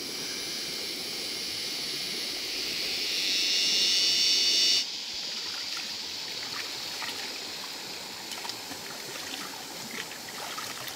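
A steady high-pitched buzz swells for the first few seconds and cuts off suddenly about five seconds in. A river's flowing water takes over, with small splashes as hands are rinsed in it.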